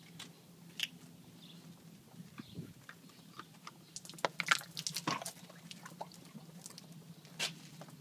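A plastic water bottle crinkling and clicking as a horse mouths it and drinks from it. The sharp crackles come thickest from about halfway through.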